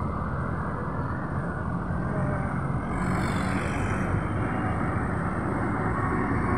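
Steady outdoor road-traffic noise with wind rumbling on a phone microphone. Something passes, louder and brighter, from about three seconds in.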